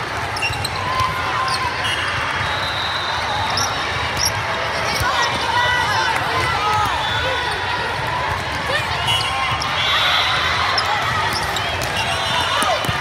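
Busy volleyball hall ambience: many overlapping voices of players and spectators, with volleyballs being hit and bouncing on the courts.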